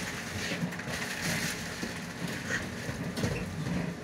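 Inside a city bus standing at a stop: a low steady background hum with scattered rustles and small knocks.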